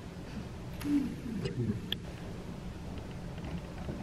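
Quiet room tone with a brief, faint murmured voice about a second in and a small click near the middle.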